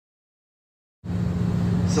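Silence, then about halfway in a steady low drone of an aircraft cabin in flight, a constant low hum with engine and air noise beneath it.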